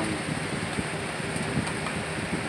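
Electric box fan running close by, a steady even rushing noise.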